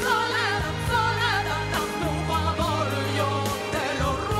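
A woman singing lead into a microphone with a live pop band, the drums keeping a steady beat under her wavering, held notes.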